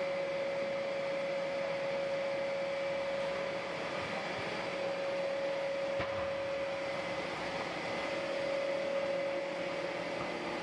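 A two-layer blown film extrusion line running: a steady rushing hum with a constant mid-pitched whine.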